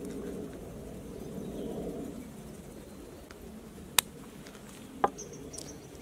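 Dried mixed herbs shaken from a plastic-topped shaker jar onto minced beef, a soft sound for the first two seconds or so, followed by two sharp clicks about four and five seconds in.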